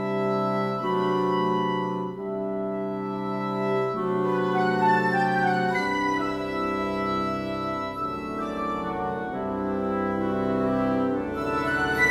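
An orchestral woodwind section on its own (flutes, oboes, English horn, clarinets and bassoons) playing sustained chords that change every one to two seconds. About four seconds in, the upper winds and piccolo add a quicker figure above the held chords.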